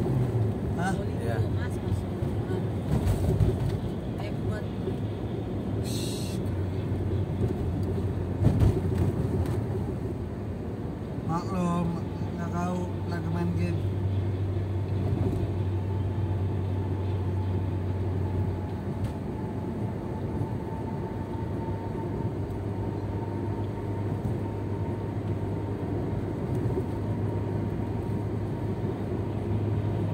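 Steady engine and tyre noise inside a moving car at highway speed, with a constant low hum. A couple of low thumps stand out, the loudest about eight and a half seconds in.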